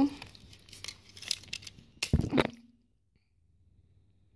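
Small plastic clicks and crackles as a DVD drive's parts are handled and pried, then a loud sharp snap about two seconds in as the small circuit board soldered to the tray motor is pulled off the plastic frame.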